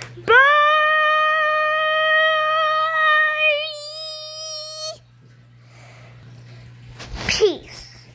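A child's voice holds one long, high, steady note for about four and a half seconds and then cuts off suddenly. Near the end comes a short squeal that falls in pitch.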